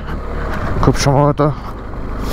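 KTM Adventure 250's single-cylinder engine running as the motorcycle rides along a gravel road, under a steady low rumble of wind on the microphone. A man's voice speaks briefly in the middle.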